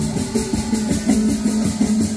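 Music with a steady beat and a repeating bass line.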